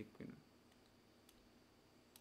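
Near silence, room tone only. A brief murmur of voice comes just after the start, and a single faint click comes about a second and a half in.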